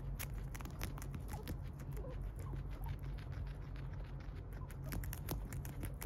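A guinea pig chewing leafy greens up close: a fast, irregular run of small crisp crunches and clicks as it bites and munches the leaves, over a low steady hum.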